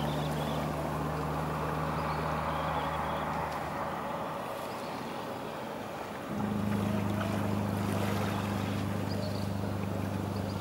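Boat engine droning steadily out of sight; its low hum fades a few seconds in, then a louder, higher-pitched hum starts suddenly about six seconds in.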